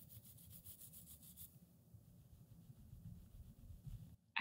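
Very faint scratchy rubbing of fingers stroking a hand-knitted yarn bag held close to the microphone, a quick run of light strokes in the first second and a half, then softer rustling.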